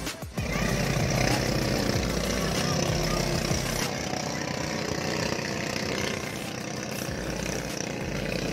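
Motorized outrigger boat (pumpboat) engine running steadily, starting after a brief dip at a cut near the start, with music playing over it.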